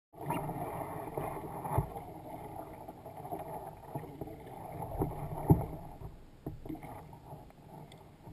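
Sea water lapping against a fishing kayak's hull, with a few sharp knocks from gear being handled on the kayak; the loudest knock comes about five and a half seconds in.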